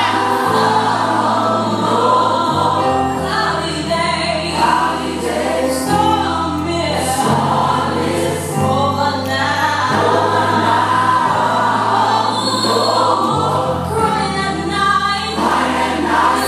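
Gospel choir music: a choir singing over instrumental backing with held bass notes that change every few seconds.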